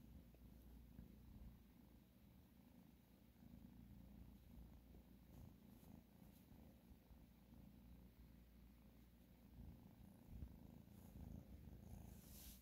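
A young kitten, under nine weeks old, purring faintly as a steady low rumble close to the microphone.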